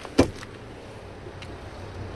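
A single thump shortly after the start, then faint steady background noise.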